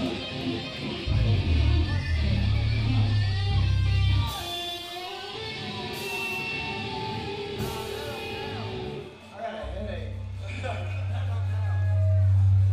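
Live band's electric guitars played loud through amplifiers: heavy low held notes for a few seconds early on and again in the last couple of seconds, with lighter guitar notes and three short cymbal splashes in between.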